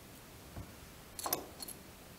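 A soft low knock, then a quick cluster of light, sharp clicks and clinks a second later, with two fainter clicks after: small fly-tying tools, such as the glue needle, being handled and set down at the bench.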